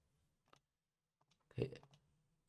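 A single sharp computer mouse click about half a second in, followed by a few fainter ticks a moment later.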